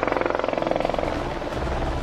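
Airbus H125 helicopter's main rotor beating in a fast, even pulse, which fades about one and a half seconds in, leaving a lower rumble.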